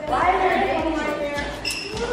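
A person's voice, talking indistinctly, with a short high-pitched tone near the end.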